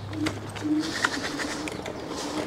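A dove cooing: a few low, flat-pitched coo notes, the longest in the middle.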